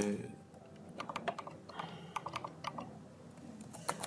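Typing on a computer keyboard: a run of irregular keystroke clicks.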